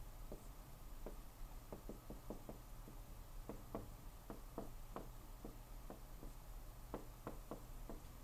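Dry-erase marker writing on a whiteboard: a run of faint, irregular taps and short scratches as each stroke is drawn.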